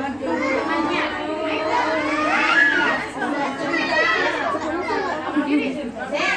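Several young children's voices chattering and calling out over one another, without a break.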